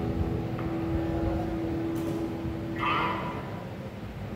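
Electric guitar rig through an amplifier: one steady held note rings for about three seconds over a low room rumble. A short higher-pitched sound comes just before the end.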